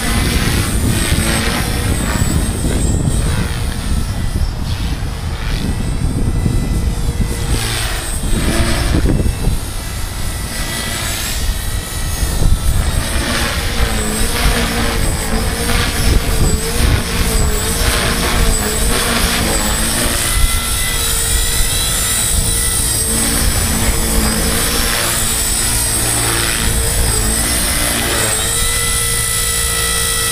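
Electric 450-size radio-controlled helicopter (Chaos 450 Pro) in flight: its motor and rotor whine rises and falls in pitch as it manoeuvres, over a steady low rumble.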